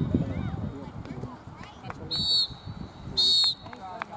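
Referee's whistle, two short blasts about a second apart, signalling the end of the match.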